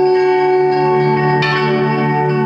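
Ambient music played live on lap steel guitars through effects pedals: layered, sustained bell-like tones, with a new chiming note coming in about one and a half seconds in.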